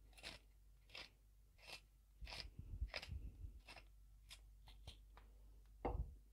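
Pepper mill grinding black peppercorns: a faint run of short crunches, about one and a half a second, one per twist. A louder knock comes near the end.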